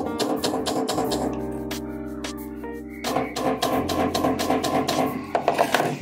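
A run of quick light hammer taps on a steel cuticle nipper's pivot as it rests on a steel anvil block. The taps peen the joint, which is still stiff and slow to spring back open. Background music runs throughout.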